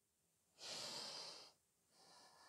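A woman's single audible breath, lasting about a second, starting about half a second in, with near silence around it.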